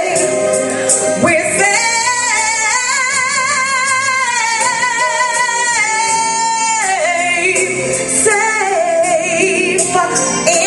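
A woman singing a gospel song into a handheld microphone, amplified through a PA speaker, holding long notes with a wide vibrato over musical accompaniment.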